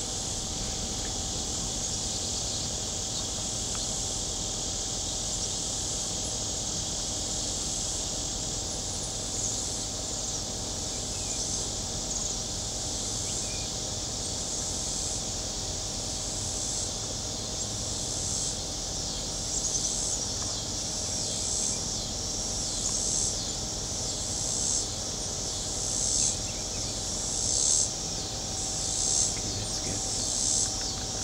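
Insect chorus: a steady high-pitched buzzing, with a pulsing call that repeats about every second and a half and grows louder toward the end.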